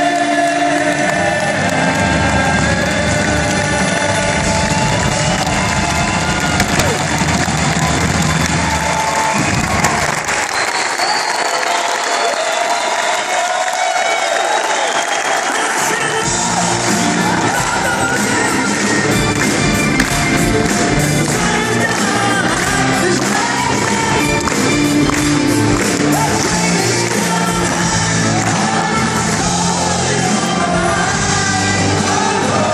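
Rock band playing live, with singing over it and the crowd cheering. The bass and drums drop out for several seconds about a third of the way through, then the full band comes back in.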